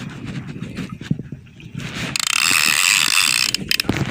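Shimano Torium conventional fishing reel being cranked, its gears and ratchet making a rapid run of clicks. A loud hiss comes through from about two seconds in until shortly before the end.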